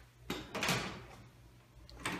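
A bathroom door being handled: a sharp click about a third of a second in, then a brief swish of the door moving.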